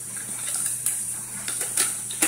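Small clicks and rattles from a boombox's cassette deck being handled as the tape is changed over to its B-side, over a steady hiss and a low hum from the player.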